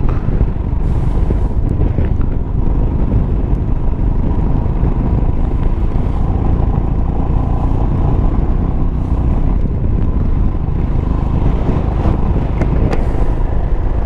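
Motorcycle riding at steady road speed: the engine running under a heavy, constant rumble of wind on the microphone.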